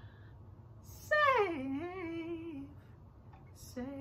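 A man's voice sings a slow, drawn-out phrase. It starts about a second in, slides down in pitch, holds, and is followed by a short note near the end. No guitar strumming is evident under it.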